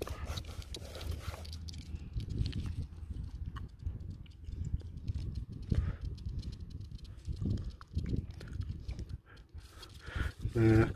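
Low, uneven rumble with irregular rustles and soft knocks: handling noise from a gloved hand turning a coin up close to the microphone.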